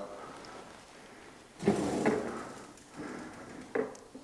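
Old wooden kitchen drawer being pulled open on its runners: a scraping slide about a second and a half in that lasts about a second, a lighter rub after it, and a short knock near the end.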